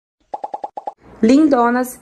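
A quick run of about six short, pitched pops, a cartoon-style popping sound effect. A woman starts speaking about a second in.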